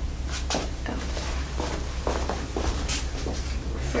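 A handful of short, soft knocks and bumps, spread unevenly over a few seconds, over a steady low hum.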